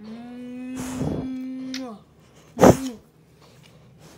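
A drawn-out vocal sound held on one steady note for about two seconds, then a short, loud vocal burst that drops in pitch a little later.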